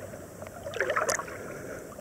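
Lake water splashing and sloshing at a camera held at the surface by a swimmer, with water washing over the lens; a louder flurry of splashes from a swimming stroke comes about a second in.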